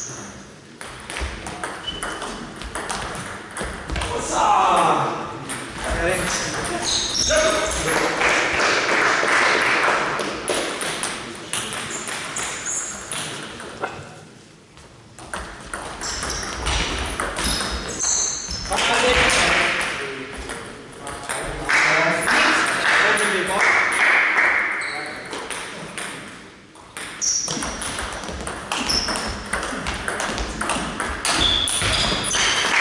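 Table tennis rally: the ball clicking back and forth off bats and table in quick runs of sharp ticks. Between rallies come louder bursts of indistinct voices.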